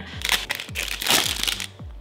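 Plastic protein-bar wrapper crinkling as the bar is unwrapped and bitten, over background music with a steady kick-drum beat about three times a second.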